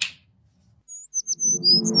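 Birds chirping, a quick run of short high chirps and downward-sliding whistles starting about a second in, with a low ambient music drone swelling in beneath them near the end: the opening of a reverb-drenched ambient saxophone soundscape.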